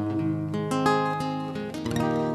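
Acoustic guitar playing a short instrumental fill of single plucked notes, one after another, in a slow ballad accompaniment with no voice over it.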